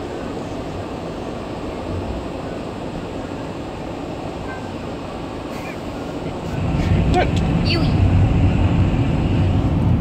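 Road and engine noise inside a van's cabin: a steady rumble that grows louder about six and a half seconds in.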